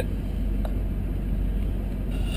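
Steady low rumble of the truck's engine idling, heard from inside the cab, with one faint tick about two-thirds of a second in.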